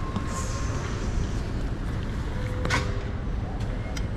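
Airport terminal hall ambience: a steady low rumble with faint distant voices, and a single sharp knock about two and a half seconds in.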